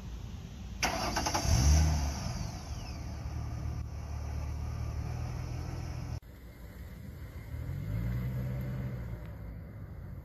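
Ford Mustang engine starting, with a quick rev about a second in, then idling steadily. After a sudden cut, the engine revs up again as the car pulls away.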